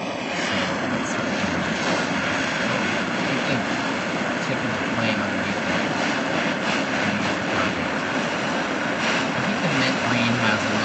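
Gas torch flame burning with a steady, even rushing noise as it fires a mint green opaque enamel coat on a metal disc from beneath a trivet.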